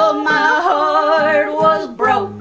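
Two women and a man singing a held phrase in close three-part harmony with wavering vibrato, the voices sliding down near the end, over a strummed acoustic guitar.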